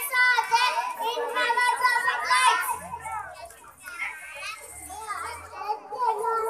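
Young children's voices speaking into a microphone, louder in the first half and quieter with pauses later.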